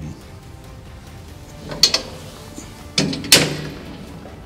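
Swath curtain of a KRONE Swadro single-rotor rake being swung up by hand: a light knock about two seconds in, then a louder clunk near the end.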